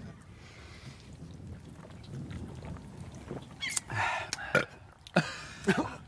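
Men drinking from cans, then a breathy exhale of satisfaction about four seconds in, with a few short mouth clicks near the end.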